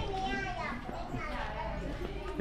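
High-pitched voices of other people talking or calling out, strongest in the first second and again briefly a little past the middle.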